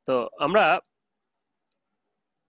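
Speech only: a person says two short words at the start, then silence.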